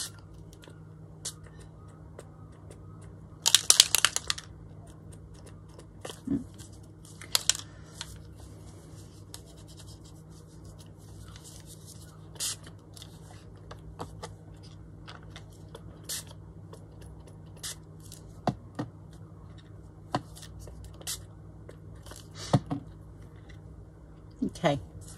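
Pump-spray bottle of Tim Holtz Distress Oxide spray misting onto paper tags: a run of quick sprays about four seconds in and a shorter one near eight seconds, with light clicks and taps of the bottle and hands between.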